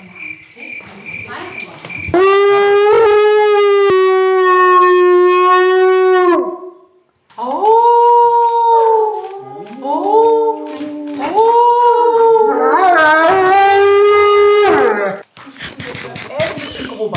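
A wolfdog howling. First comes one long, steady howl of about four seconds. After a brief pause there is a run of shorter howls that rise and fall in pitch, with two voices overlapping near the end.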